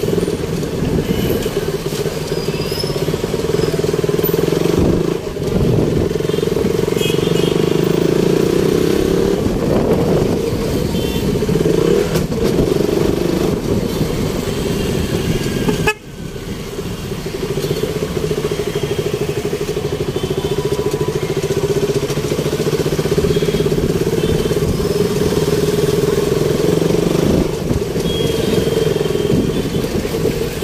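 Motorcycle engine running steadily at low speed in stop-and-go traffic, heard from the rider's position, with short honks of other vehicles' horns now and then.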